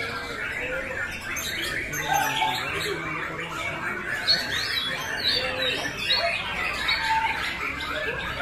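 Several caged white-rumped shamas singing at once in a contest: a dense, unbroken tangle of overlapping sliding whistled phrases.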